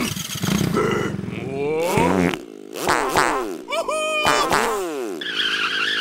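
Wordless cartoon character vocal noises: a run of gibberish grunts and squeals whose pitch slides up and down, with a buzzy, motor-like stretch in the first two seconds.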